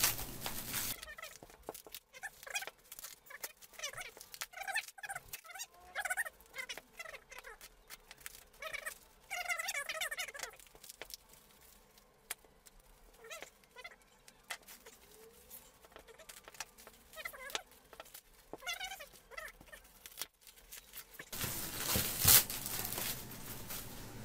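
Plastic stretch film and packing tape being cut with a utility knife and torn off by hand: irregular crinkling and crackling with short squeaks from the stretched plastic. Louder rustling sets in near the end as the wrapped fabric is handled.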